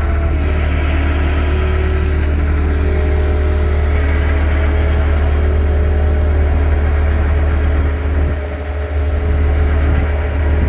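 Rollback tow truck's engine running with the PTO engaged to drive the bed hydraulics and winch while a car is let down the bed: a steady low drone with a faint higher whine, dipping briefly near the end.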